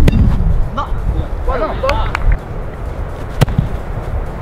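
A sharp thud of a foot striking a small ball right at the start, and a second sharp knock about three and a half seconds in, with short voices and low wind rumble on the microphone between them.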